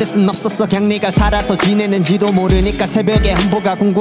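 A Korean hip hop track: a rapped verse in Korean over a beat with a deep, recurring kick drum.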